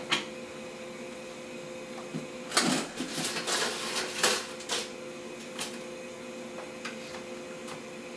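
Dishes and kitchenware being handled in a kitchen: a cluster of clattering knocks and clinks from about two and a half to five seconds in, then a few single knocks, over a steady hum.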